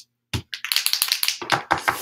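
A Posca paint marker being shaken, its mixing ball clicking rapidly inside the barrel to mix the paint. The clicks come about eight to ten a second, starting about a third of a second in.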